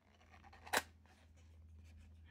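Small cardboard ink box being opened by hand: one sharp click of the tuck flap pulling free about three-quarters of a second in, then faint paper-card rustling.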